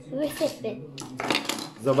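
Small hard plastic toy figures clicking and clattering against each other as a hand rummages through a basket of them.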